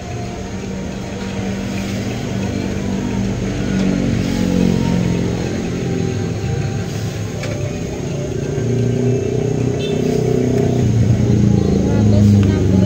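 A motor vehicle's engine running close by, growing steadily louder with slow rises and falls in pitch.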